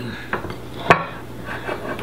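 A fork stirring flour and water into a sourdough starter in a glass bowl, scraping and clinking against the glass, with one sharp clink about a second in.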